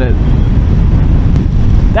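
Honda NC750X DCT motorcycle underway at road speed, heard from the rider's position: a loud, steady low rumble of engine, tyres and wind buffeting.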